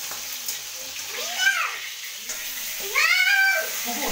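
A cat meowing twice, each meow drawn out and rising then falling in pitch, the second longer and louder, over a steady hiss of food frying in a wok.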